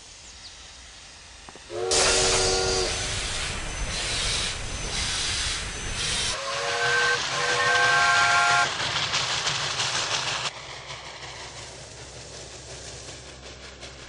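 Steam locomotive whistle blowing twice, a short blast about two seconds in and a longer one around the middle, each sounding several notes at once over the loud hiss of escaping steam. Near the end only a quieter steady running noise remains.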